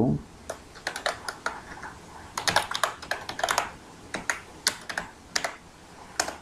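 Typing on a computer keyboard: irregular key clicks, with quick flurries of keystrokes about two and a half and three and a half seconds in.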